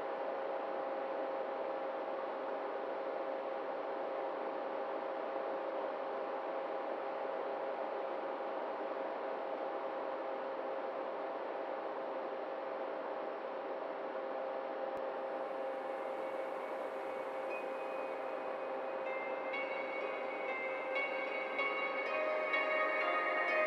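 A steady, even drone with a hiss and a few held tones. Ambient music with chiming notes comes in about three-quarters of the way through.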